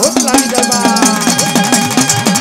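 Dakla devotional music: the dak hourglass drum is struck in a fast beat, its pitch dipping and rising with each stroke, over a rapid, even metallic tapping and steady held instrumental tones.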